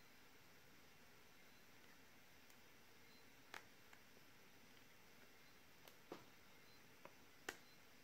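Near silence with a few faint clicks in the second half, as red 18650 lithium-ion cells joined by nickel strips are handled and twisted apart by hand.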